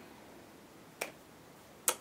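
Quiet room tone in a pause, broken by two short sharp clicks, one about a second in and one just before the end.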